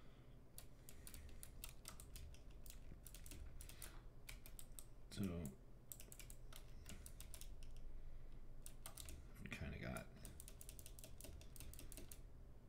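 Computer keyboard keys pressed in quick runs of light clicks, two bursts a few seconds apart, as a string of edits is undone one keystroke after another.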